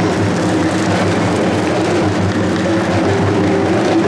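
Traditional Ghanaian shoulder-slung drums beaten with curved sticks, playing a dense, unbroken rhythm for dancers.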